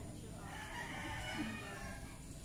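A rooster crowing once: a long call that starts about half a second in and lasts a little over a second.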